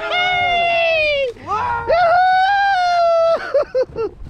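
Men's excited, drawn-out shouts: one long cry that slides down in pitch, then a second, longer held one, cheering as a hooked tautog (blackfish) comes up at the surface.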